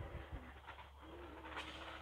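A dove cooing faintly: low, soft sustained notes, one ending just after the start and a longer one from about a second in.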